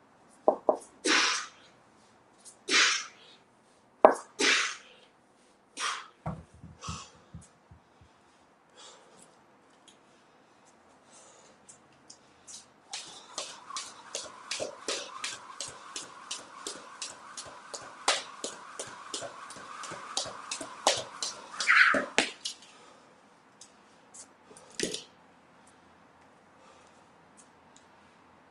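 Hard, forceful exhalations with each double kettlebell swing, followed by a few low knocks. Then a jump rope slaps the floor about three times a second for roughly ten seconds through a set of singles, with heavy breathing at the end of the set.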